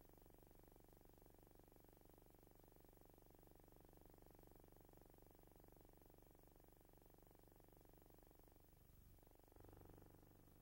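Near silence: the film's soundtrack is missing, leaving only a faint steady low hum, which shifts briefly a little after nine seconds in.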